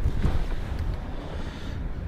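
Steady low rumble of a Mini John Cooper Works' turbocharged 1.6-litre four-cylinder engine idling.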